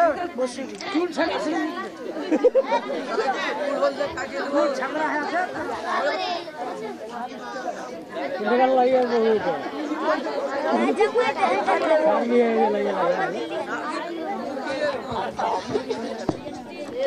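Indistinct talking throughout: several voices overlapping in chatter that no single line of speech stands out from.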